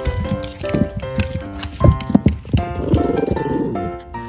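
Jack Russell terrier under a sofa going after a tennis ball: a few dull knocks, the two loudest about two seconds in, then about a second of rough, rasping animal sound near the end, over background music.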